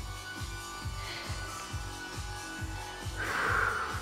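Background music with a steady low beat, and a short hiss about three seconds in.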